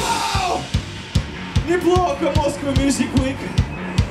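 Live punk rock band: the loud full-band playing with a shouted vocal drops out about half a second in, leaving spaced drum hits with a voice over them.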